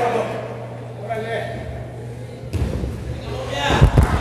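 Heavy thuds on the boards of a wrestling ring, coming in a few loud hits near the end, as a wrestler moves across the ring. Before them there are faint voices and a steady low hum from the hall.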